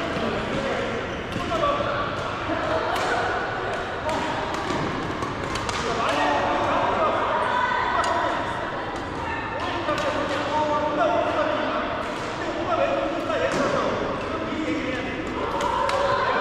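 Badminton rackets striking shuttlecocks, sharp irregular clicks from several games at once, over indistinct chatter echoing in a large sports hall.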